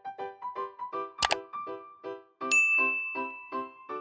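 Short outro jingle of quick plucked notes, about five a second, with a sharp click about a second in and a bright bell ding about two and a half seconds in that rings on: a subscribe-button sound effect.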